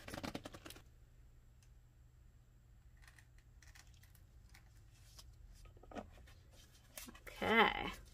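Small clicks and rattles from a paint bottle being handled in the first second, then near-quiet with a few faint ticks while Payne's Gray acrylic is poured into a split cup, and a short vocal sound near the end.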